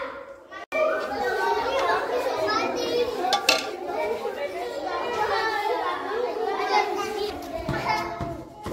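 Many young children talking and calling out at once, a busy babble of small voices with no single speaker standing out. The sound drops out briefly a little under a second in, then the chatter carries on.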